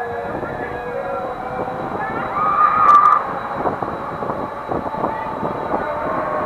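Riders' voices shouting on a swinging flying-gondola ride over the ride's steady running rumble and rushing air. The loudest sound is a high-pitched yell about halfway through.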